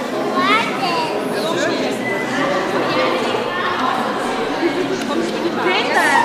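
Several people's voices chattering and calling out in a large indoor hall, a steady hubbub with short high calls scattered through it.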